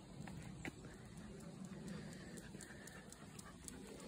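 Faint footsteps and light clicks on a tarmac path as a husky trots back to its handler.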